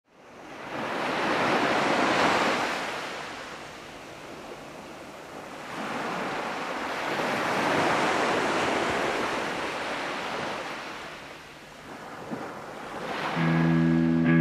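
Sea waves washing ashore, a hiss that swells and falls back twice. Near the end, electric guitar and bass come in.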